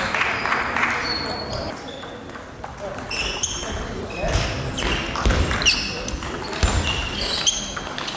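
Table tennis rally: rapid sharp clicks of the celluloid-type ball off the rubber bats and the table, with short high squeaks and low thuds from the players' shoes on the sports hall floor.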